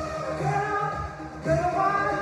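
Dance-workout music playing: a song with a sung vocal line over a steady, repeating low beat.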